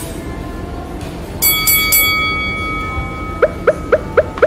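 A bright bell-like chime struck three times in quick succession about a second and a half in, its tones ringing on and fading over the next two seconds. Near the end comes a run of short rising blips, about four a second, over soft background music.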